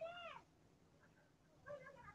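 A faint, short animal-like call at the very start, rising and then falling in pitch over about half a second, with fainter scattered sounds near the end.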